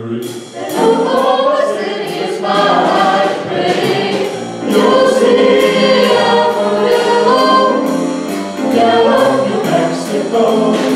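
A mixed vocal group of about ten men and women singing a pop song in harmony through microphones and a PA, over a steady beat.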